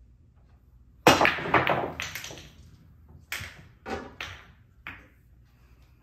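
Break shot in 7-ball pool: a sudden loud crack about a second in as the cue ball smashes into the racked balls, then a quick cluster of clacks as they scatter off each other and the cushions. Over the next few seconds four more separate sharp clicks of balls knocking together as they roll out.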